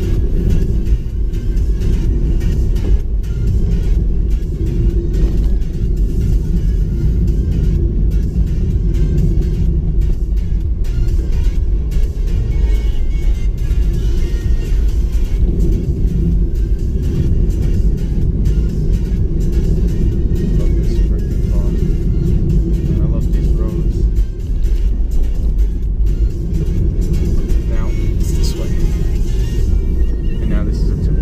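Cabin noise inside a moving Toyota Yaris: a steady low rumble of the engine and the tyres on the road.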